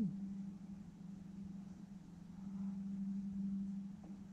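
A low, steady hum that grows somewhat louder about two and a half seconds in.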